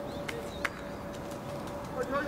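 Birds calling, with small chirps and a short low coo, over a steady hum. One sharp knock comes a little over half a second in.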